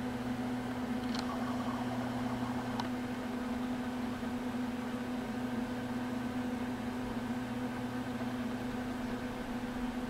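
A steady machine hum, a low drone with overtones, throughout. A faint rustle with two light clicks comes between about one and three seconds in.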